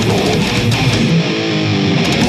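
Death metal band playing live, with heavily distorted electric guitars over drums. About a second in, the drums and low end drop back and a guitar plays a short run of stepped notes on its own.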